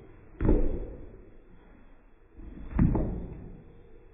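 Two heavy thuds, about two and a half seconds apart, each fading slowly into a long tail. The sound is dull and muffled, as if the recording has been badly degraded.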